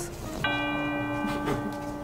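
Bell-like chime sound effect: one tone struck about half a second in that rings on steadily.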